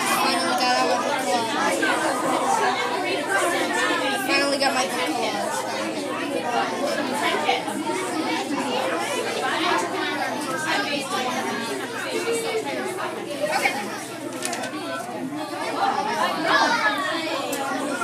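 Many voices talking over one another: the steady chatter of a classroom full of children.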